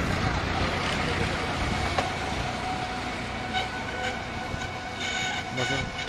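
A steady rumbling noise with a couple of sharp knocks, joined in the second half by a high whining tone that comes and goes.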